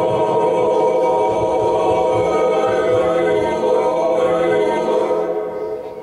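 Recorded choir music: voices holding one sustained chord, which fades away near the end.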